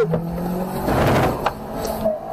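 A Chevrolet car's engine revving as the car pulls away hard, heard from inside the cabin, with a rush of noise building to a peak about a second in and a sharp click shortly after.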